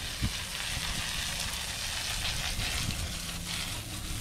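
Garden hose spraying water onto a log, a steady hiss of spray.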